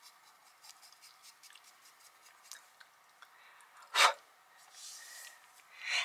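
Faint scratching of a Tinkle eyebrow razor's blade scraping peach fuzz off facial skin in short, light strokes, with a brief louder rush of noise about four seconds in.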